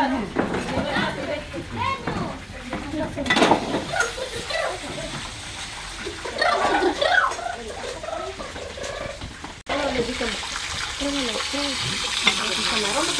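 People talking, with a little kitchen clatter. After a sudden cut near the end, fish sizzles as it fries in oil in a wide pan, a steady hiss with voices over it.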